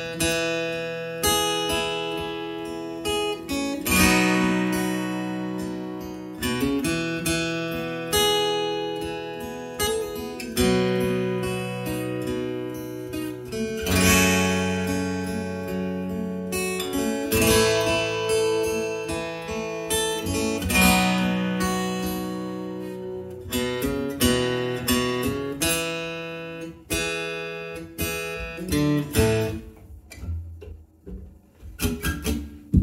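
Epiphone Hummingbird Pro acoustic-electric guitar strummed in ringing chords, a new strum every second or two, amplified through a PA speaker via its newly replaced Shadow under-saddle pickup. The pickup is working and sounds as it did before, with even output across the strings. The playing fades near the end.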